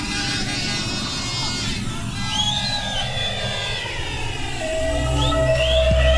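Electronic dance music from a live DJ mix: a breakdown with a sweeping effect that falls and then rises in pitch, then heavy bass and a held synth note come back in about five seconds in and the music gets louder.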